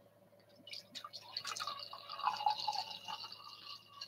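Sparkling malt beverage poured from a bottle into a glass, starting with a few small clicks under a second in and running for about three seconds before stopping just before the end.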